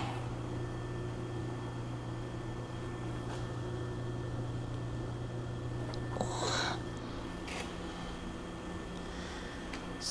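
Steady low hum, with a short scrape about six seconds in as a T-handle chuck key turns a jaw screw on a large four-jaw lathe chuck.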